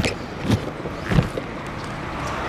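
A few short slurps of iced coffee drawn through a plastic straw, over the steady noise of passing street traffic.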